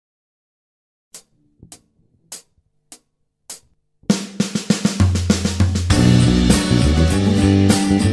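Start of a band recording: about five light ticks at an even pulse, then a drum kit groove with snare and hi-hat comes in about four seconds in, and an electric bass guitar line joins about a second later.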